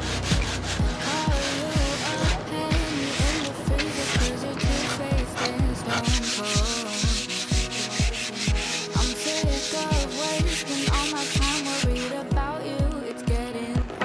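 Hand sanding of a raw wooden board with sanding sponges: repeated back-and-forth scratchy strokes of abrasive on wood, heard under background music with a steady beat.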